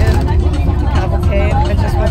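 A bus running with a steady low rumble, under the chatter of many people talking at once.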